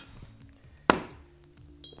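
A single sharp clink about a second in, as an ice cube drops into a glass.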